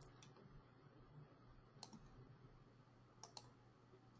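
Near silence with four faint clicks from working a computer: one near the start, one about two seconds in, and a close pair a little past three seconds.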